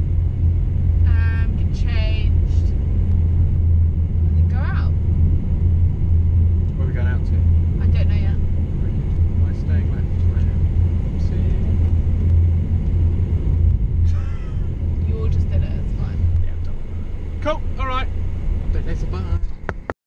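Steady low rumble of a car driving, heard from inside the cabin, easing off a little near the end. Short bits of talk come and go over it.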